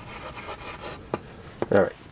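Pencil scratching across paper in quick, loose sketching strokes, with a single sharp click a little over a second in.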